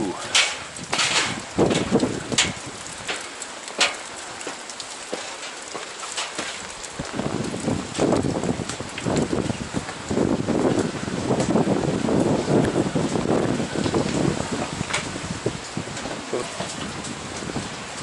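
Steady rain hissing on wet rock, with footsteps knocking on metal grated stair treads in the first few seconds as someone climbs.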